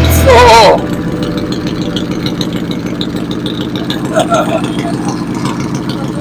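A brief loud shout near the start, then a motorcycle engine idling steadily, with faint voices around it.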